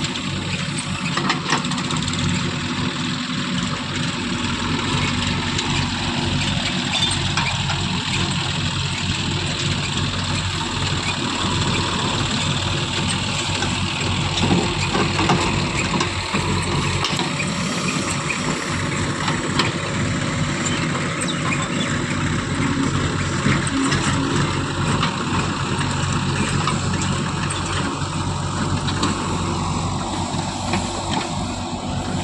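Diesel engines of a JCB 3DX backhoe loader and a Sonalika DI 745 tractor running steadily while the backhoe digs earth and loads it into the tractor's trolley.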